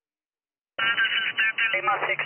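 Silence, then just under a second in a ham radio operator's voice cuts in suddenly on single-sideband through the shortwave receiver, thin and telephone-like with nothing above about 3 kHz.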